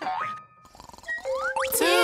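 Cartoon sound effects over a light children's-song backing: a few short, rising whistle-like glides about a second in, then a loud swooping glide that rises and falls near the end.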